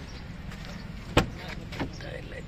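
A single sharp clunk from a car door about a second in, followed by a lighter click, over a steady low background rumble.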